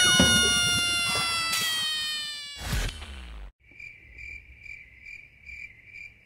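Brass music ends on a held chord that fades out over the first two and a half seconds, its pitch sagging slightly. After a short gap, a cricket chirps steadily, about two chirps a second. This is an edited-in cricket sound effect for a comic silence.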